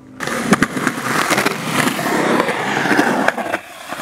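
Skateboard wheels rolling on a concrete ramp and bowl, with a few sharp clicks and knocks early on. The rolling drops away briefly near the end.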